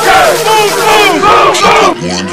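A group of young people yelling and cheering together, many voices overlapping.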